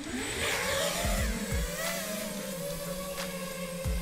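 Brushless motors and Ethix S4 propellers of an iFlight DC5 FPV quadcopter spooling up for takeoff: a whine that rises in pitch over about the first second, then holds fairly steady with slight wavering as it flies. Background music with a low thumping beat runs alongside.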